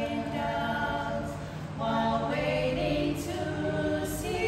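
Three women singing a song together without instruments, phrase after phrase, with a short breath between phrases about halfway through.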